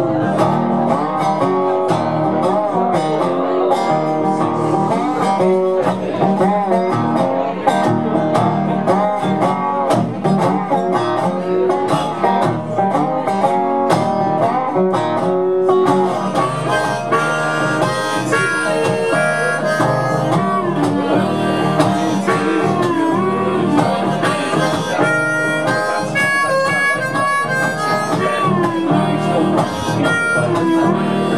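Dobro resonator guitar picked in a blues instrumental break, with a harmonica played from a neck rack over it.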